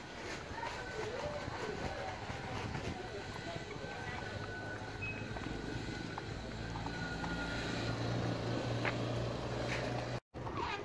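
Steady outdoor background noise with a low engine hum that grows louder over the last three seconds or so.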